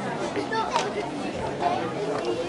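Indistinct chatter of several voices talking over one another, with no clear words and one short sharp sound about three-quarters of a second in.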